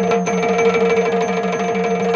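Yakshagana ensemble music: maddale barrel drums played by hand in a fast, even rhythm over a steady held drone.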